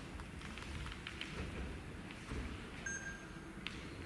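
Quiet hall room tone with a few soft taps of footsteps on a wooden floor, and a short, faint high beep about three seconds in.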